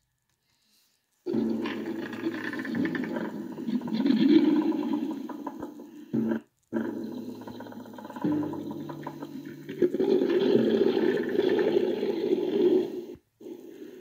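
Roaring, growling animal sound effects in two long stretches, broken by a short gap about halfway through.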